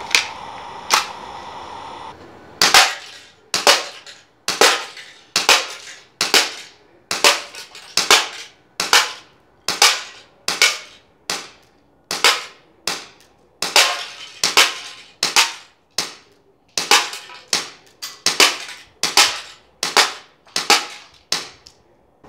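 Tokyo Marui SIG P226 gas blowback airsoft pistol firing a long string of single shots at a steady pace, a little under two a second. Each shot is a sharp pop with the slide snapping back. Two handling clicks come first, and the shooting starts about three seconds in.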